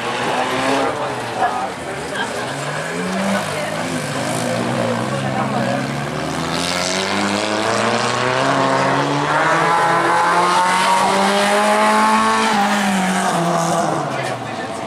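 Autocross race car's engine revving under hard acceleration on a dirt track. Its pitch rises and falls with gear changes, then climbs steadily through the second half and drops near the end.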